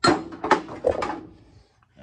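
Old steel tools clanking against each other and the sheet-metal bin as a hand digs through it: a sharp clank, then three or four more within the first second, dying away.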